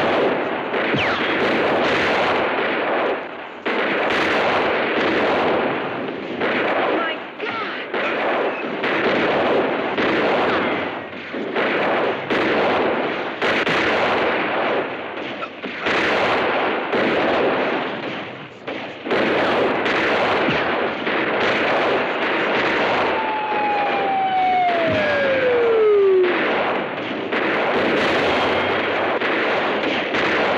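Heavy gunfire in a film shootout: shot after shot in rapid, near-continuous succession. A falling whine sounds about three-quarters of the way through.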